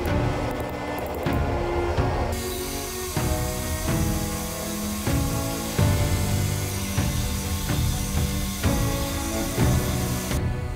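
Background music throughout. A few hammer taps on steel at the anvil come first. From about two seconds in, a belt grinder runs steadily as steel is ground against the belt.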